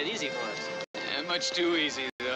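Voices over background music, broken by a brief drop to silence about halfway through.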